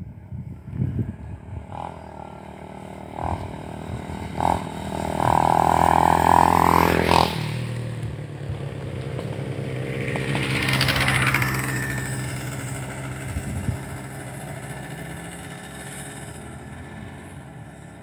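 Motor vehicles passing along the road under a steady engine hum. The loudest stretch builds to a pass about seven seconds in, and a second vehicle swells past around eleven seconds, then fades.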